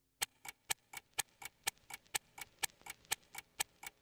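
Faint, even ticking like a clock, about four ticks a second, the ticks alternating louder and softer.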